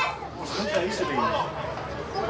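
Several people's voices talking over one another, with a loud call right at the start.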